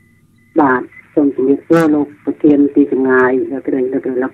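Speech: a call-in listener's voice over a phone line, starting about half a second in after a faint steady high tone.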